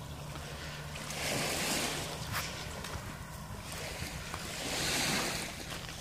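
Small sea waves washing onto a sand and shingle beach, surging twice about three seconds apart, over a steady low rumble.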